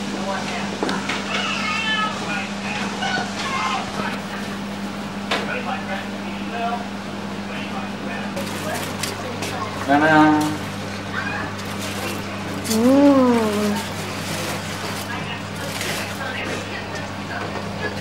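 Faint voices over a steady low hum, with one short voiced exclamation about ten seconds in and a drawn-out vocal sound rising then falling in pitch about three seconds later.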